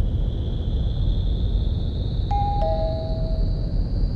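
Airport public-address chime: a two-note descending ding-dong about two seconds in, the signal that a boarding announcement is about to be made. It sounds over a steady low airport rumble with a faint high whine slowly rising in pitch.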